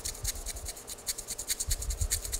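Sharp razor blade slicing thin sections from a specimen held in a polystyrene block: a quick run of short scratching strokes, several a second.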